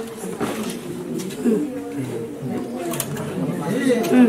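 Soft, low background voices talking in a room, quieter than the talk around it.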